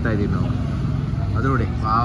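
A person talking, with a steady low hum underneath.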